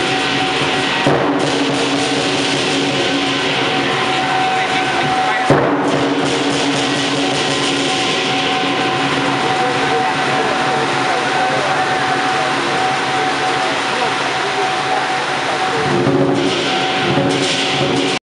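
Music accompanying a lion dance: sustained steady tones over a continuous high wash, with no clear beat. Two brief sharp knocks cut through, about a second in and again about five seconds in, the second the loudest moment.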